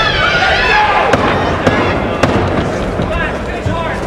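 Boxing arena crowd shouting and yelling during an exchange of punches, with three sharp smacks about half a second apart, a little after the first second, from gloves landing.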